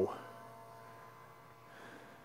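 Faint steady hum of the Bezzera Aria TOP's rotary pump running during an espresso extraction, after a man's voice ends at the start.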